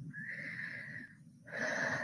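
A woman breathing audibly close to the microphone in a pause between sentences: two breaths of about a second each, the second a little louder.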